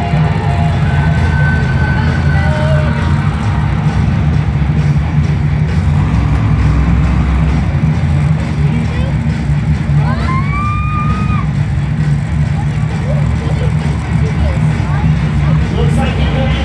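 Monster truck's big engine running with a heavy, steady low rumble that echoes around a large stadium, over the background noise of a big crowd. A brief rising whistle sounds about ten seconds in.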